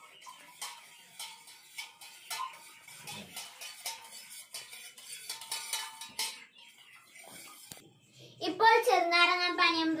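A metal spoon clinks again and again against the inside of a stainless steel mug as a drink is stirred, many quick, sharp clinks with a faint ring. Near the end a child's voice comes in loud and drawn out.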